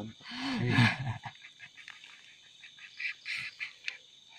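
A man's wordless, animal-like vocal sound: a pitched cry that bends up and down for about a second, followed by softer, breathy noises.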